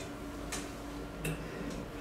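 Quiet room tone with a faint steady hum, and two soft brief clicks about half a second and a second and a quarter in.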